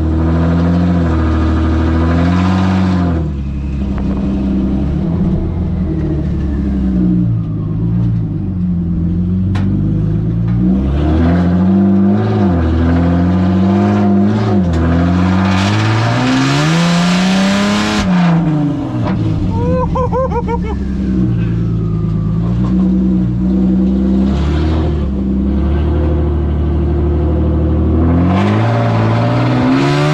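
Nissan Xterra race truck's engine heard from inside its open, caged cab, its pitch climbing and dropping over and over as the truck accelerates and eases off. There is a burst of hiss about sixteen seconds in.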